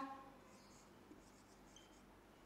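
Faint marker strokes on a whiteboard: a few soft, short scratches and squeaks as words are written.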